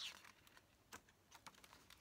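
Near silence with a few faint, short clicks as the page of a hardcover picture book is handled and turned.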